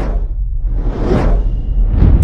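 Two whoosh sound effects, each swelling up and fading away, the second peaking about a second in, over a steady deep bass rumble. They open an animated logo intro.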